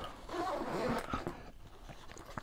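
Backpack zipper being drawn closed along a pocket of the Targus Spruce EcoSmart, faint, with a few small clicks and handling noise in the first second.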